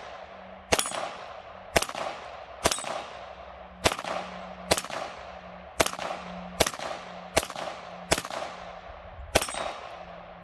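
KelTec CP33 .22 LR pistol fired in a steady string of about ten single shots, roughly one a second, each shot trailing off in a short echo.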